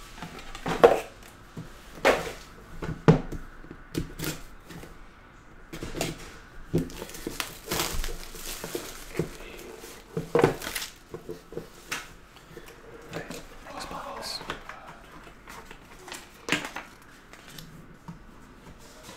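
Hands handling a cardboard trading-card box and hard plastic card cases on a table mat: a string of irregular clicks and knocks, with a stretch of rustling and sliding about halfway through.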